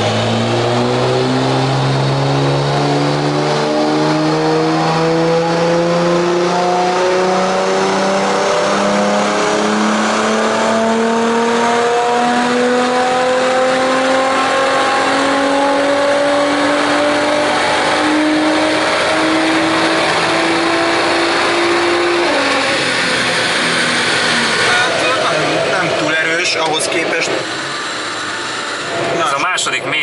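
Tuned Nissan GT-R's twin-turbo V6 with a modified, louder exhaust, doing a full-throttle power run on a roller dynamometer. The engine note climbs steadily in pitch for about twenty seconds, then drops away as the throttle is released and the car coasts down on the rollers.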